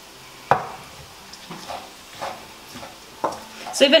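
Kitchen knife knocking on a wooden cutting board as poached chicken breast is shredded and sliced. One sharp knock comes about half a second in, then a few lighter taps.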